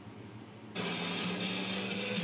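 Television sound cutting in abruptly under a second in as the remote turns it on or up: a dense, steady soundtrack with a low hum, over faint room hiss before it.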